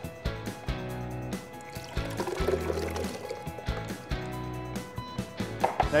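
Background music, with a creamy liquid being poured from a bowl into a blender jar.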